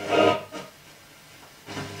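A man's voice from a spoken FM radio broadcast, played through the Sanyo music centre's own speaker, heard briefly at the start and again near the end. Between the two there is a pause filled with faint hiss.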